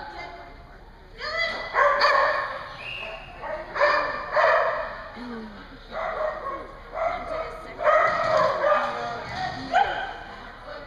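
A small dog barking in repeated bursts of several barks, coming about every two seconds, as it runs a dog-agility course.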